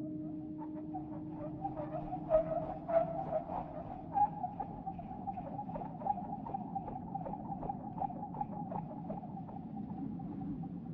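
Ambient soundtrack over the closing credits: a wavering mid-pitched tone and a regular train of short pulses, about two to three a second, over a low drone.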